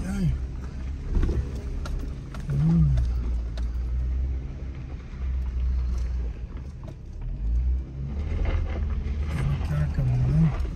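Jeep engine running at low speed, heard from inside the cabin as it crawls over a rough, rocky dirt road, with a few knocks and rattles from the bumps.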